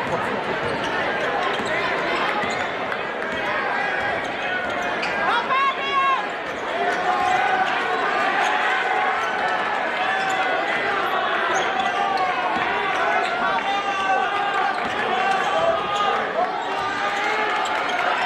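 A basketball dribbled on a hardwood gym floor, heard under the steady talking of a large crowd of spectators.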